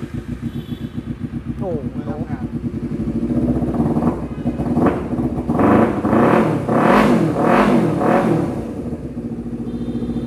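Honda CBR250RR's parallel-twin engine running through an aftermarket exhaust: a steady idle, then about half a dozen quick throttle blips that rise and fall, then back to idle.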